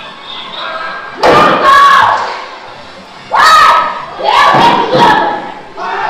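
Actors in a cowboy stunt show yelling loudly three times, about one, three and four seconds in. Each yell starts sharply and wavers in pitch, and quieter amplified dialogue comes before them.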